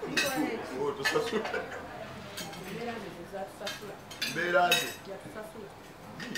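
Cutlery clinking against plates at a dinner table, a few sharp clinks spread across the moment, under people talking.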